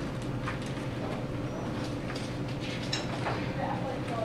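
Quiet room tone with a steady faint hum, broken by a few faint clicks and paper rustles as a hardcover picture book is handled and its pages are turned.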